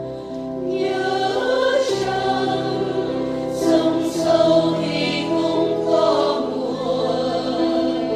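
A choir singing a Vietnamese Catholic hymn over instrumental accompaniment, the voices coming in over held chords about a second in.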